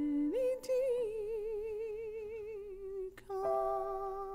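A woman singing long held notes with a wide vibrato, the pitch rising about half a second in; the line breaks briefly about three seconds in and resumes on another held note, over a faint sustained accompaniment tone.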